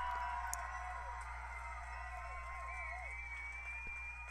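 Stock sound-effect recording of a large crowd applauding, with cheering voices over the clapping and a long high whistle in the second half.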